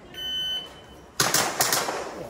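Electronic shot timer's start beep, one short high tone, followed about a second later by a rapid string of sharp cracks from an Action-Air gas pistol as the shooter begins the stage.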